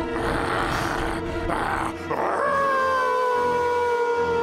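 Cartoon wolf-monster's howl: one long call that begins about two seconds in and slowly falls in pitch, over dramatic score music.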